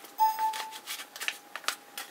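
Paper rustling and crinkling as a small paper envelope stuffed with die cuts is handled, with a sharper crackle just after the start and a few lighter crinkles after it.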